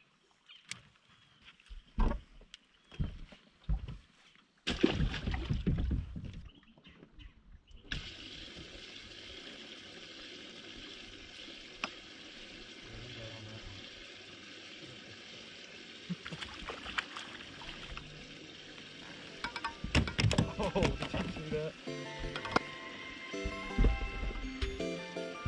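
Scattered knocks and handling noise of fishing gear in a small boat, with a loud rough stretch of rustling about five seconds in. After that a steady hiss sets in, and background music comes up near the end.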